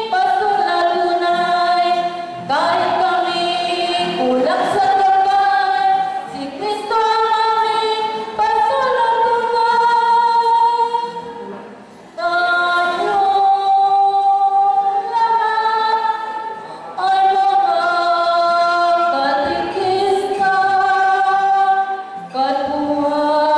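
Group of women singing a song together in long held notes, with an acoustic guitar accompanying. The phrases break every couple of seconds, with a short pause about twelve seconds in.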